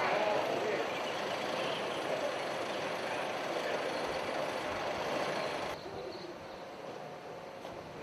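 Busy outdoor background of indistinct voices and a steady noise haze while people load a vehicle, dropping suddenly to a quieter hush a little before six seconds in.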